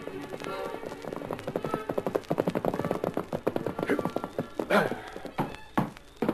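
Galloping horse hoofbeats, a radio-drama sound effect, rising out of the tail of orchestral bridge music. A horse whinnies about three-quarters of the way through, and a few separate knocks follow as it pulls up.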